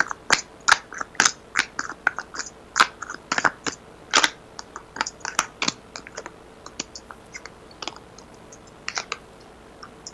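Tarot cards being handled and laid out: a run of irregular sharp clicks and snaps, thick for the first six seconds or so, then sparser.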